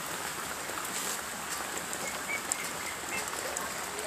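Steady rain on wet ground, an even hiss with a few faint tick-like drops.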